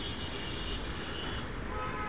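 Steady background hum of distant city traffic.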